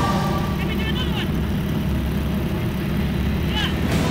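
Yak-52's radial engine and propeller droning steadily in the open-canopy cockpit, with short high-pitched cries from a passenger about a second in and again near the end.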